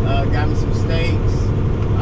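Steady drone of a semi truck's diesel engine and tyres at highway speed, heard from inside the cab. A voice comes and goes over it.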